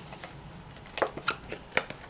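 Tarot cards being handled: a few short clicks and light rustles of the cards, starting about a second in.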